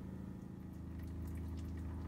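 Faint steady low hum of several even tones with no distinct events: room tone.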